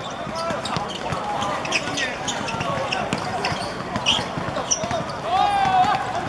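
Footballers shouting and calling to each other during play, with short knocks of the ball being kicked and of feet on the pitch. The voices grow louder about five seconds in.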